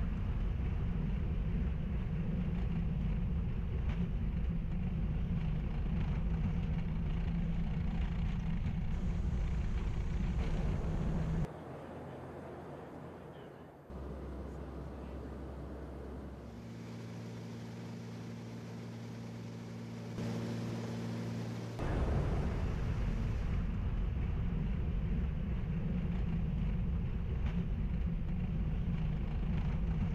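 Steady low drone inside the cabin of a US Navy P-8A Poseidon patrol aircraft in flight. Near the middle it drops quieter for about ten seconds, with a few steady humming tones, then the louder drone returns.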